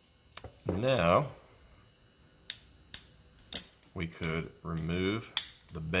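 3D-printed resin support struts being twisted and snapped off a printed denture base: several sharp single snaps, the loudest in the second half, among brief low vocal sounds.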